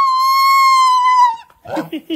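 One long, high, steady call from an animal answering a cue to "say hi", bending slightly downward before it stops about one and a half seconds in.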